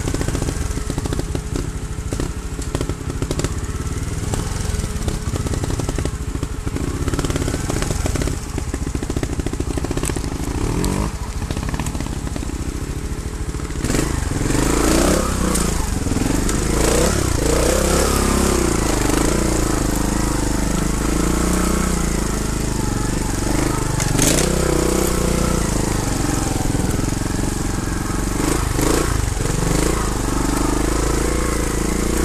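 Trials motorcycle engine running at low revs on a steep rocky climb; from about halfway it gets louder, with the revs repeatedly rising and falling as the throttle is worked.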